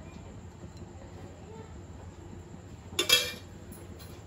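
A single short metallic clink about three seconds in: a tablespoon striking a nonstick kadhai as a spoonful of ghee is put in.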